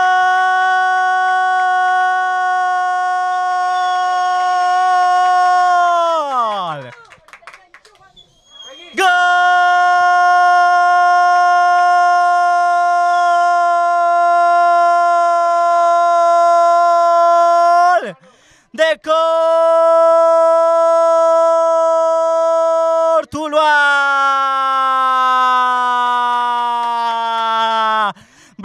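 Football commentator's drawn-out 'gooool' cry for a goal, a man's voice held on one steady high note in four long breaths: the first drops away about seven seconds in, and the last slides slowly down in pitch.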